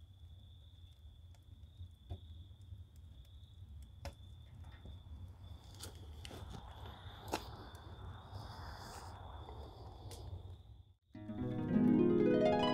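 Wood fire burning in a steel barrel stove with its door open: a low steady rumble with scattered crackles and pops, swelling into a louder hiss in the middle. Plucked-string music starts about a second before the end.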